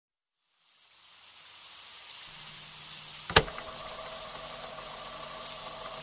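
Rain sound fading in as the intro of a lofi track, with faint held low tones underneath and a single sharp click a little past three seconds in.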